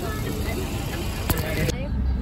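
Low rumble of a car's cabin with faint voices in it, a single sharp click past the middle, then an abrupt change to a steadier low rumble near the end.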